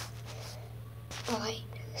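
A steady low hum under a quiet pause. Just past a second in, a short soft voice sound rises and falls in pitch for well under a second.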